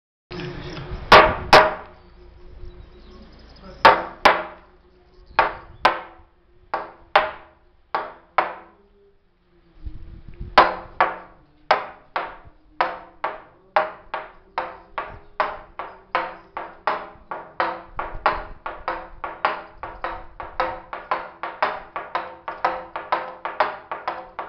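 A wooden toaca (semantron), a long hanging wooden beam, struck with a wooden mallet. First come a few spaced knocks, some in pairs. After a pause of about a second, an even rhythm starts and gradually speeds up to about three knocks a second, each knock with a short woody ring.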